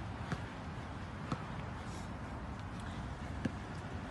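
Steady outdoor background noise with three faint, short knocks spread through it.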